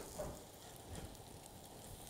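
Brioche French toast frying in a little oil in a pan: a faint, steady sizzle with small scattered crackles.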